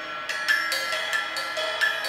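Drumsticks striking the cymbals of a drum kit: a run of about six quick metallic hits, each leaving a bell-like ring.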